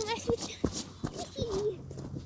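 A child's voice making two drawn-out, wordless calls, one at the start and another about one and a half seconds in, over quick footsteps striking snow-covered lake ice, a sharp step every third of a second or so.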